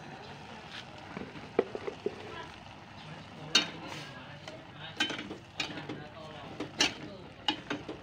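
Metal spatula clinking and scraping against a stainless-steel pan while stirring boiling instant noodles, a series of sharp clinks mostly in the second half. Under it runs a steady hiss from the boiling pan.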